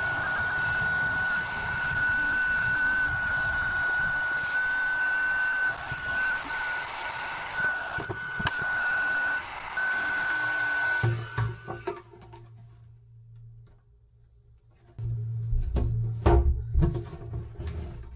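Electric heat gun running with a steady high whine and a rush of air, heating heat-shrink sleeves on wire butt connectors. It switches off about eleven seconds in. Near the end come a low hum and a few handling knocks.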